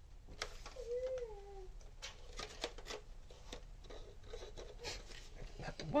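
Hard plastic parts of a toy foam-dart blaster being handled and fitted together: scattered clicks, taps and rattles. A short wavering voice-like tone comes about a second in.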